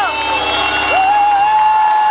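Concert crowd cheering at the end of a song, with nearby fans' long, high-pitched screams held over the noise. A new scream rises in about a second in and is held.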